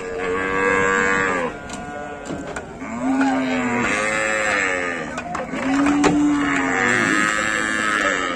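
Cattle mooing: three long calls one after another, each rising and falling in pitch.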